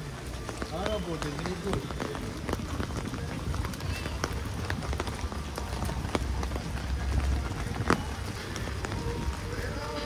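Rain falling on wet paving and awnings, with the footsteps of someone walking through it and a low rumble throughout. A person's voice is heard briefly about a second in.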